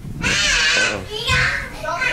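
Two loud, shrill wordless calls in a row, the first filling most of the first second and the second shorter just after it.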